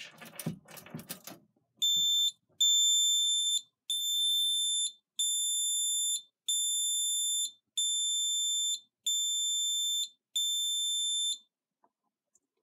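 Scantronic SC-800 alarm keypad beeping a high-pitched pulsed tone, one short beep then eight beeps of about a second each with short gaps: the 10-second exit delay running after the system is armed by the key switch. A few clicks at the start as the key switch is turned.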